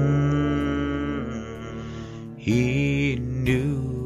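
Male voice singing a slow country ballad over guitar accompaniment: a long held note, then a new phrase begins about two and a half seconds in.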